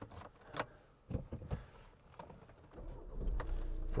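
Clicks and light rattles of car keys being handled. About three seconds in, a low steady rumble sets in.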